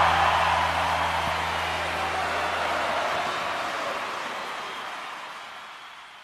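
The end of a live rock-and-roll number ringing out: a low held note stops about halfway through, while crowd cheering fades out steadily.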